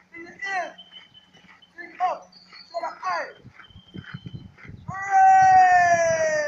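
Marching drill calls shouted in a high young voice to keep a squad in step: a few short calls that drop in pitch, then one long, loud, drawn-out call about five seconds in.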